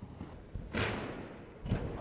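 A horse jumping a small fence on soft arena footing: a loud burst of hooves pushing off about a third of the way in, then a heavier low thud as it lands near the end.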